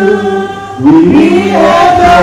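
Youth choir singing a gospel song with held notes. The singing dips briefly about half a second in, then picks up on a rising line just before a second in.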